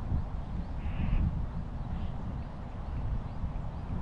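Wind buffeting the microphone in an uneven, low rumble, with a bird giving one short call about a second in.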